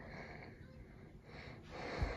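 Quiet room tone, then a soft breath that swells toward the end.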